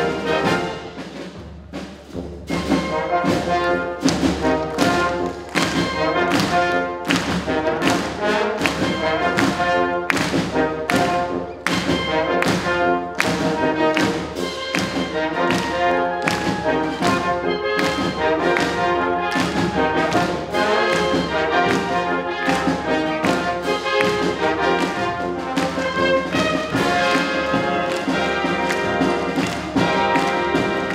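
Navy band of brass and saxophones, with trombones and a sousaphone, playing a pop arrangement with a steady beat of sharp accents. It drops quieter for a moment shortly after the start, then comes back in full.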